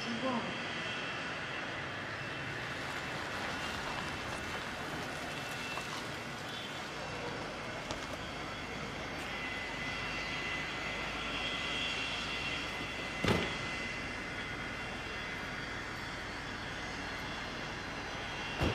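Steady outdoor ambience of distant jet aircraft and traffic hum at an airport terminal, with a single sharp thump a little after the middle.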